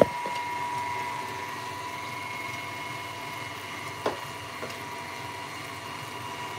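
Sugar syrup boiling in a stainless saucepan on a gas burner, a steady bubbling hiss with a thin steady whine underneath. A sharp knock comes right at the start and a fainter click about four seconds in.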